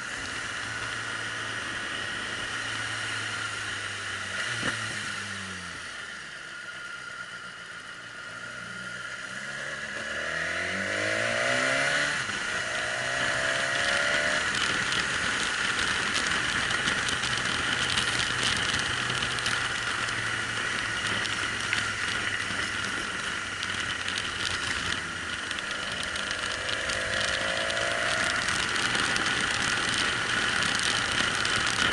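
Motorcycle engine running under the rider, heard from a bike-mounted camera with wind noise on the microphone. The engine note drops several seconds in and climbs again a few seconds later, and the wind rush grows louder as the bike picks up speed in the second half.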